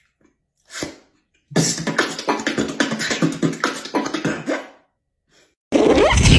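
Human beatboxing: a short mouth sound about a second in, then a quick rhythmic pattern of sharp drum-like mouth clicks and hits for about three seconds that cuts off. A new loud vocal effect with a falling pitch starts near the end.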